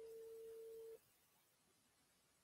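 A single steady electronic beep, one mid-pitched tone lasting about a second that cuts off sharply, then near silence.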